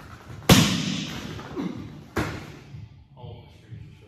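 A loud, sharp hand clap about half a second in, echoing in a large hard-floored room, followed about two seconds in by a second sharp smack.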